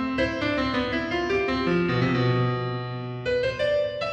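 Solo piano music: a slow passage of struck notes and chords, each ringing and fading before the next.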